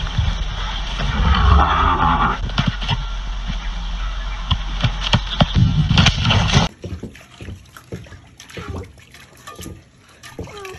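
A ram butting a hanging punching bag: sharp knocks over a loud, steady noisy background. After a sudden drop in level about two thirds of the way in comes softer splashing and sloshing as a small animal paws at water in a metal bowl.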